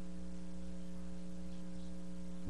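Steady electrical mains hum: a constant low buzz made of several unchanging tones under a faint hiss, with no other sound.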